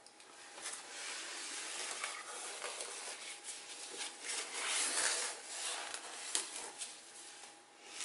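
Rubbing and rustling of hands handling things, with a few light ticks, starting about half a second in and fading near the end.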